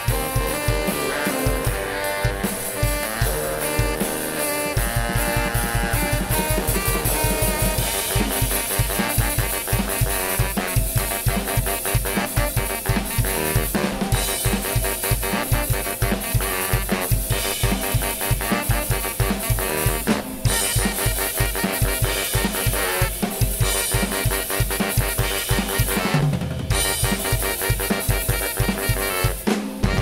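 Live band music: two saxophones playing over a drum kit's steady beat of kick and snare.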